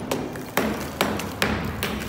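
Hammer striking and chipping loose, crumbling wall plaster: five sharp blows about two a second, each followed by a brief patter of falling debris.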